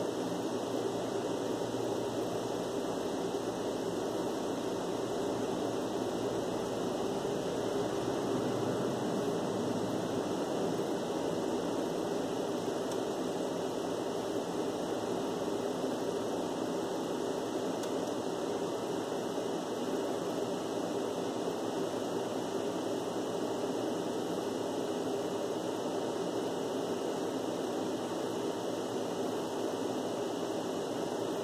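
An air conditioner running: a steady rush of air with a low hum, unchanging in level.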